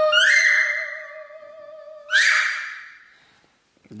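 A woman singing one long held note with a slight waver while a toddler copies her twice with higher, louder sung cries, about a quarter second and two seconds in; the held note fades out near the three-second mark.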